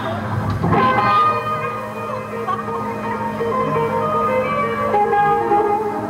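A three-piece band playing a slow blues live, led by electric guitar over bass. A chord or note is struck just under a second in, and its held notes ring on steadily.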